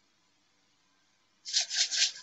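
A quick run of scratchy rubbing strokes, about five in under a second, starting near the end.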